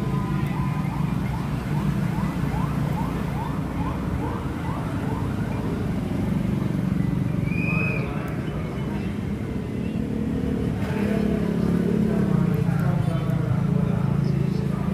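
Busy town-centre market and street ambience: a steady low traffic rumble with background voices. Early on, a rapid series of short rising chirps sounds, about two a second for several seconds.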